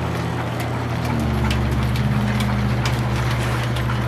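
Belt-driven line-shaft machinery running: a steady low drone from the drive, growing stronger about a second in, with irregular clicks and clacks from the flat belts and pulleys.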